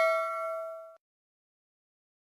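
Notification-bell 'ding' sound effect of a subscribe-button animation, a bright bell tone with several overtones, fading as it rings out and stopping about a second in.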